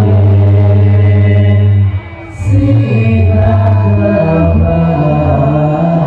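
A group of men chanting sholawat, Islamic devotional songs of praise to the Prophet, into microphones through a loud amplified sound system. The chant breaks off briefly about two seconds in, then resumes with long held notes.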